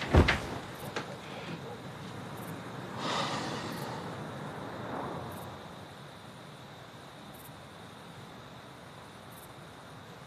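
A window being opened, with a clunk at the very start, followed by faint steady outdoor background noise like distant traffic, swelling softly about three seconds in.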